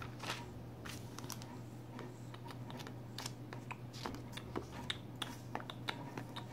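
Paper pages of a glossy catalog being turned and handled: a run of faint, irregular rustles and crinkles, over a steady low hum.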